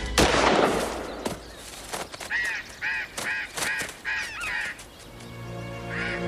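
A single gunshot, the loudest sound, with a short echoing tail, then a bird giving a run of about six harsh calls, roughly two and a half a second.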